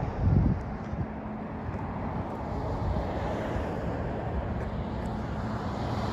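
Steady outdoor street noise: a low rumble of distant traffic with wind on the microphone.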